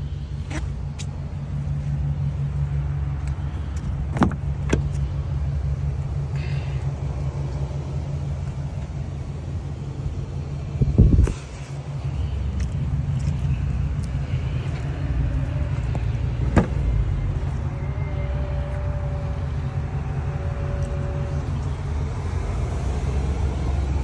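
Low steady hum of a stationary 2021 GMC Yukon XL idling, with scattered clicks and knocks, and a louder thump about halfway through.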